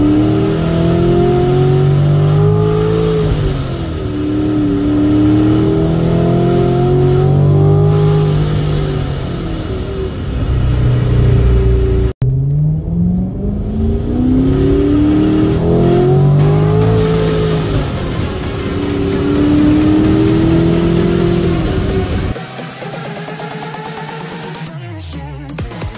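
Supercharged C7 Corvette 6.2-litre V8 pulling hard through the gears: the engine note climbs in pitch, then drops at each quick paddle upshift of the 8-speed automatic, about four times across two runs. There is a short break about halfway through, and music takes over near the end.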